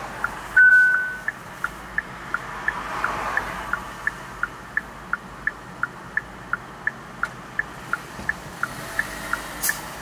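A car's turn-signal indicator ticking in alternating tick-tock pairs, about three ticks a second, over faint cabin road noise. A single short electronic beep sounds about half a second in and is the loudest thing.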